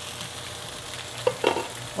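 Pan-fried dumplings (potstickers) sizzling steadily in oil in a nonstick frying pan, the last of the steaming water cooking off as they start to brown on the bottom. A brief vocal sound cuts in about a second and a half in.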